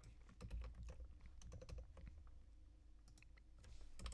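Faint, irregular computer keyboard clicks.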